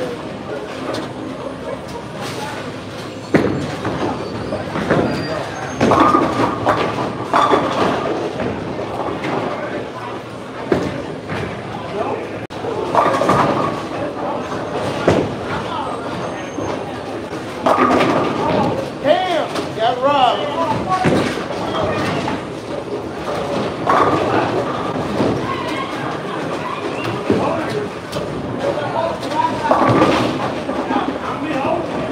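Bowling balls rolling down wooden lanes with a sudden crash of pins about three seconds in and further clattering impacts later, amid the talking of people in the alley.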